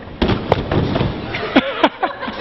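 Sharp knocks and thumps of gym equipment and landings over a noisy background, with a few short falling voice cries near the end.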